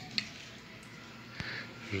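Quiet handling sounds: a faint rustle and two small clicks as the fan's plastic housing is held and turned in the hand.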